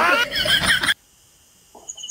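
A high-pitched, whinny-like vocal sound with a wavering, falling pitch, lasting just under a second and cutting off suddenly.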